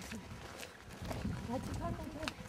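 Indistinct voices murmuring, with a low rumble setting in about a second in.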